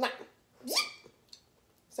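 A small dog gives one short whine that rises in pitch, a little over half a second in.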